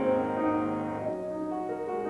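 Solo grand piano playing sustained, ringing chords, with the bass notes changing about a second in.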